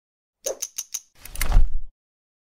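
Logo-intro sound effect: four quick sharp clicks in a row, then a swelling whoosh with a deep low boom that cuts off abruptly just before the end.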